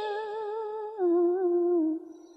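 A single woman's voice holding a long, wavering sung note at the end of a chanted verse line, stepping down in pitch about a second in and fading away near the end.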